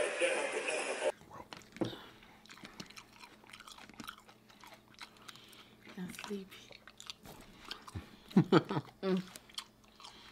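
Close-miked chewing and biting of fried takeout food: scattered small wet mouth clicks, with a few louder bites and smacks near the end. A man's voice speaking through a microphone fills the first second before the eating sounds.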